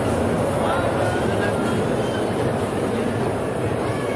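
Steady din of a busy indoor kiddie-ride area: a small ride-on train running on its track close by, under crowd chatter and children's voices, with faint music.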